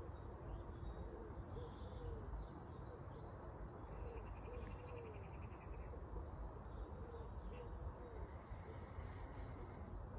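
Faint bird and insect ambience. A high, two-part descending whistled bird call comes twice, about six seconds apart. Pulsed insect-like trills and soft, low, repeated arching calls sit over a steady low rumble.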